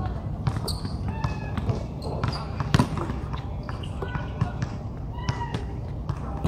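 Basketball bouncing on an outdoor hard court: several sharp bounces, the loudest a little under three seconds in, with short high squeaks in between.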